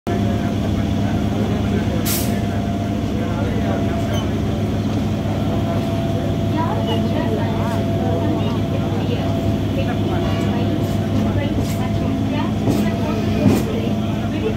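Steady running rumble of a suburban electric multiple-unit train, heard from inside the coach, with sharp clacks from the wheels on the track, one about two seconds in and several near the end.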